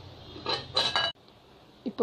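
Glass bowl clinking against a hard surface, two ringing clinks within the first second, cut off abruptly, then quiet.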